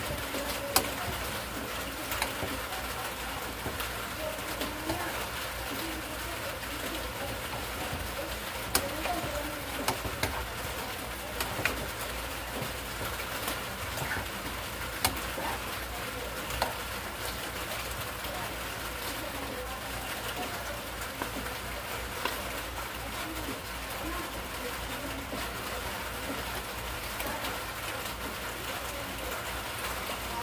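Pancit odong noodles and vegetables stir-frying in a pan: a steady sizzle, with a utensil clicking and scraping against the pan now and then as the food is tossed.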